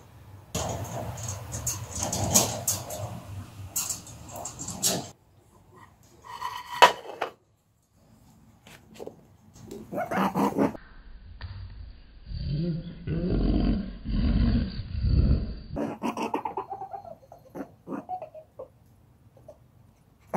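A pet rabbit grunting in agitation while being stroked, in short bursts between rustling handling noises.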